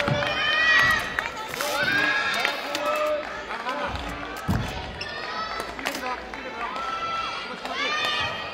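Badminton players' shoes squeaking on a gymnasium court, with heavy footfall thuds and sharp racket hits on the shuttlecock. Indistinct voices echo in the hall.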